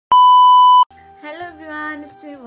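Colour-bar test-tone beep: one steady, loud, high tone lasting under a second, starting and cutting off abruptly.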